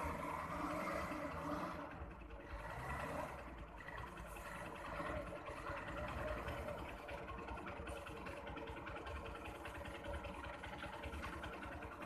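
A truck's engine running at low speed in the distance, a steady low rumble as the truck crawls over a rough dirt road.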